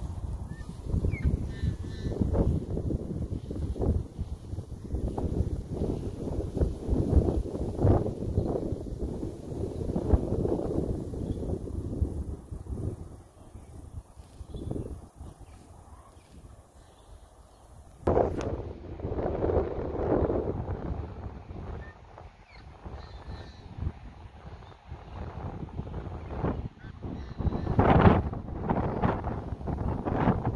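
Wind buffeting the microphone in irregular gusts, easing off for a few seconds in the middle before picking up again.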